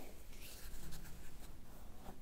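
Fingers rubbing and scratching through hair against the scalp during a head massage: a dry rustling scrape in several short strokes.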